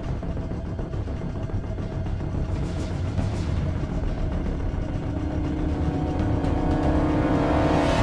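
Background music over a steady low drone of aircraft engines; held notes in the music build and grow louder in the last few seconds.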